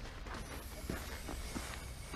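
Faint, scattered light clicks and ticks over a steady low rumble.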